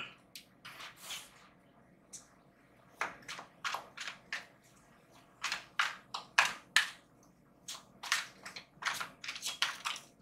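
A tarot card deck being shuffled by hand: runs of short, crisp card snaps and flicks in several irregular bursts, with quiet pauses between.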